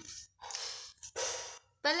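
A person's voice: two short breathy sounds with no pitch, like sighs or whispered breaths, then a girl starts talking near the end.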